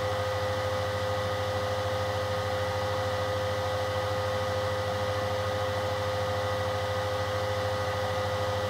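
Steady electrical hum and hiss with a constant mid-pitched whine, unchanging and with no other event.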